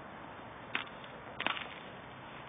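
Two sharp cracks on the frozen water, a little under a second apart. The second is louder and is followed by a brief clatter of smaller clicks.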